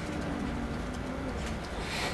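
A faint, low, drawn-out hum from a person's voice, sagging slightly in pitch and fading after about a second and a half, over a steady low room hum. A short hiss follows near the end.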